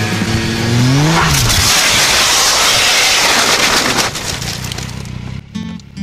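Motorcycle engine revs climbing sharply for about a second as the bike goes down, then a loud rushing scrape of the crashing bike sliding off the track, lasting about three seconds before it dies away.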